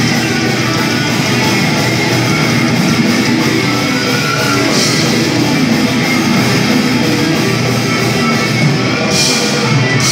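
Heavy metal band playing live: distorted electric guitars, bass and drum kit in a dense, loud, continuous wall of sound, with a cymbal crash about halfway through and another near the end.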